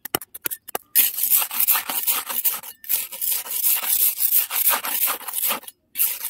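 Dry, crumbly soil being scraped and dug with a small hand tool: a few light ticks, then from about a second in a rapid, continuous run of scratchy scraping strokes that stops briefly just before the end.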